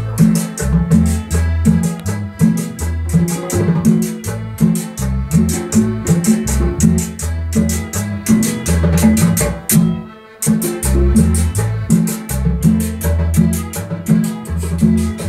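A band playing live with guitars over a steady drum beat and a repeating bass line; the music drops out for a moment about ten seconds in, then the beat comes back in.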